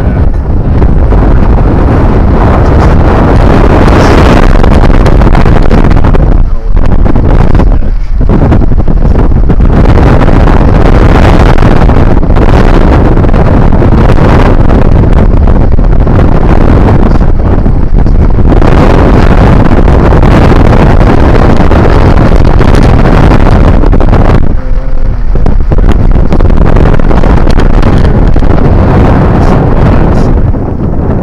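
Loud, steady wind buffeting on the microphone of a camera riding on a moving vehicle, mixed with the vehicle's road noise; it drops off briefly a few times.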